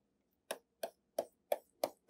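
Stylus tapping on a tablet screen while drawing quick hatching strokes: five light clicks, about three a second.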